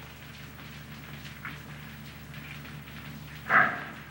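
Steady hiss and low hum of an old film soundtrack, with a brief loud call in a man's voice near the end.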